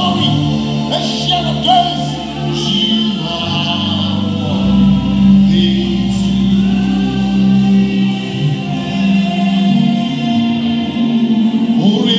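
Live gospel praise music: a male lead singer and a choir of women singing over a band, with long held low bass notes that shift every few seconds and steady cymbal beats.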